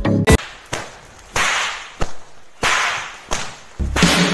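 Edited whoosh sound effects: a sharp crack just after the start, then three swishing noise bursts about a second apart, each fading out over roughly half a second.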